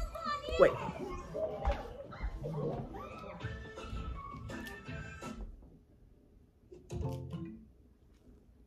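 Children's voices and music from a television playing in the house, dying away about five and a half seconds in to near quiet; a short voice sounds briefly about seven seconds in.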